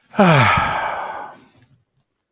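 A man's long voiced sigh, falling in pitch and trailing off breathily over about a second and a half.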